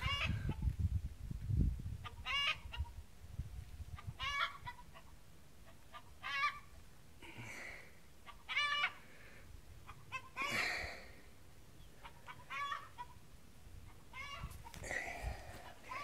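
Chickens clucking, a short call every second or two, with a few low thumps in the first couple of seconds.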